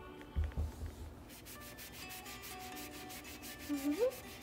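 White melamine foam eraser scrubbing crayon marks off a painted bench top, in quick back-and-forth rubbing strokes several a second, after a few low handling bumps at the start.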